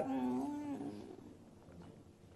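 A woman's short closed-mouth hum, 'mm-hm', in about the first second, fading away. Then it goes very quiet, with a few faint clicks near the end.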